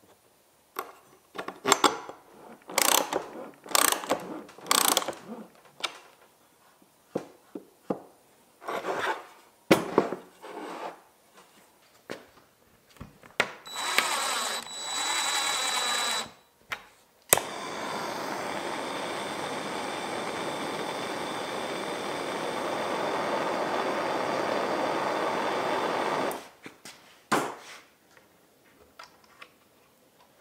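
Scattered light clicks and scrapes of a thin steel plate being worked into a slot in a plywood part, then a power drill whining for a couple of seconds. After a sharp click the drill runs steadily for about nine seconds, drilling into a metal tabletop, and a couple of short knocks follow.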